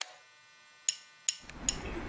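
Near silence after an abrupt cut, then three sharp, evenly spaced clicks starting about a second in, at roughly two and a half a second, with faint background noise building.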